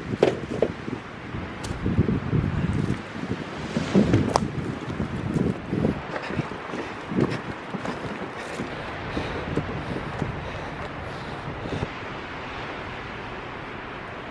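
A metal-framed garden cart being loaded and pushed over grass and dirt, clattering and rattling irregularly with a few sharp knocks in the first half. Wind buffets the microphone throughout, and the cart noise dies away after about eight seconds, leaving a steady wind hiss.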